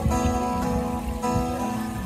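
Acoustic guitar strummed live, holding chords through a short gap between sung lines.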